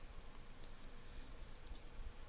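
Faint click from advancing a presentation slide, over quiet room hiss.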